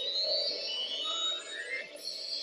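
Video slot machine's free-spin bonus music: synthesizer tones with rising sweeps repeating about once a second while the reels spin.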